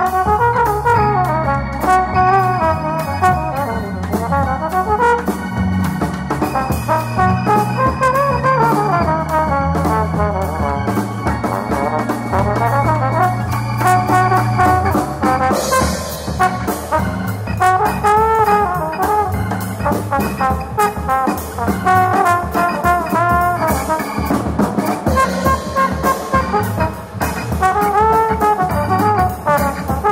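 Jazz trombone playing a lead line with many bends and slides in pitch, over keyboards and a drum kit.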